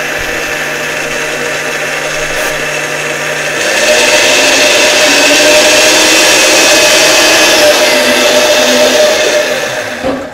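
Countertop blender running, puréeing cashews and water into a cream. About three and a half seconds in it steps up to a higher, louder speed, then dies away at the end.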